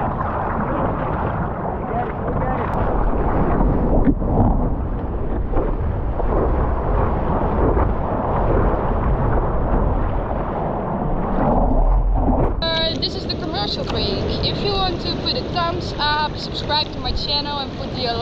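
Water rushing and splashing around a surfboard as it paddles into and rides a wave, heard muffled through a board-mounted action camera's microphone, with wind buffeting. About twelve and a half seconds in it cuts off suddenly and a woman starts talking.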